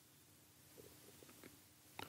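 Near silence: faint room tone, with a few faint ticks about a second in.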